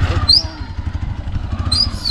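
Small commuter motorcycle engine idling with a steady, low, even putter.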